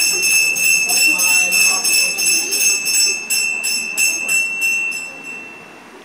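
Puja hand bell (ghanta) rung rapidly and continuously, about five strokes a second, with a steady high ring; the ringing stops about five and a half seconds in and dies away.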